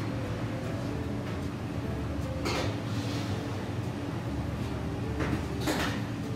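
A sheet pan being slid into a wall oven and the oven door being shut: two soft knocks, about two and a half seconds in and near the end, over a steady low hum.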